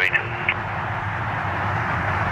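McDonnell Douglas MD-11 trijet's turbofan engines running as it begins its takeoff roll: a steady jet rumble and hiss growing slightly louder.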